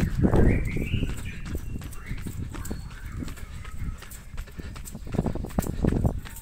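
A person's running footsteps on asphalt, a rhythm of thuds picked up by a hand-held phone's microphone along with handling noise.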